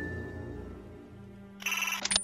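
Music fading out, then near the end a short electronic buzzer tone of about half a second: a sci-fi door buzzer.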